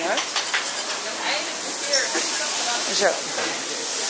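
Food sizzling on a restaurant hot-plate griddle: a steady hiss, with short bits of voices over it.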